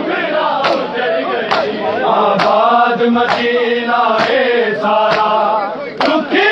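A noha chanted by male voices over a crowd of mourners beating their chests in unison, a sharp slap of many hands about once a second keeping time with the chant.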